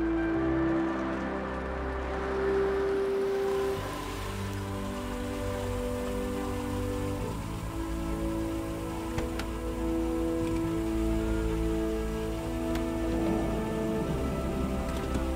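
Background film-score music: slow, sustained chords that change every second or two.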